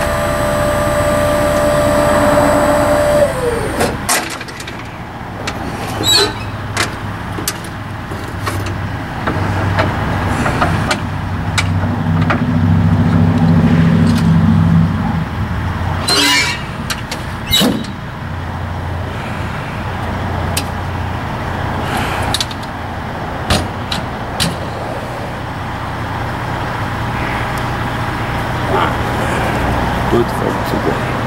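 Hydraulic liftgate pump of an enclosed car-hauler trailer whining steadily, then dropping in pitch and stopping about three and a half seconds in. After that a heavy engine runs low in the background while sharp metal clanks and knocks come every few seconds as the rear door is closed and latched.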